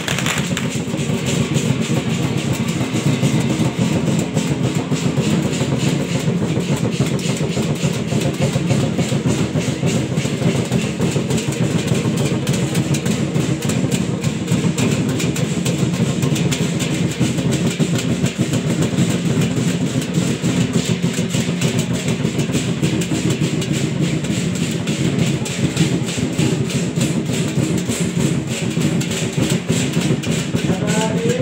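Ceremonial percussion ensemble of drums and gongs playing continuously, a dense unbroken stream of strikes at a steady loudness.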